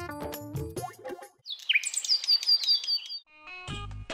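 Background music with keyboard notes breaks off about a second in; then birds chirp, a quick string of high falling chirps lasting under two seconds, and a new music track starts near the end.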